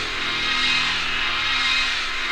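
Electronic dance music from a club DJ set recorded on cassette, in a stretch without the kick drum: held synth tones only.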